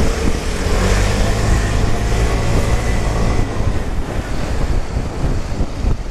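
Vespa Primavera 150 scooter's single-cylinder engine running steadily while riding through traffic, with wind rushing over the microphone.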